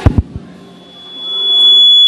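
A few heavy low thumps right at the start, then a single high-pitched tone that swells from faint to very loud in about a second and holds steady: public-address feedback.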